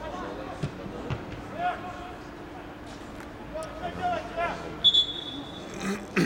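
Football players shouting on the pitch, with two dull ball-kick thuds in the first second or so. Near the end a whistle blows once, a steady high tone lasting about a second: the referee's whistle stopping play.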